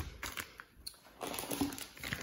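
Plastic-wrapped wax melt loaf in an aluminium tin set down on a countertop with light knocks and a crinkle of the plastic. From about a second in there is more plastic crinkling as the next wrapped loaf is handled.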